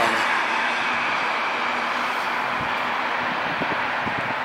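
Steady road-vehicle noise: an even hiss with a faint low engine hum underneath, holding level without a break.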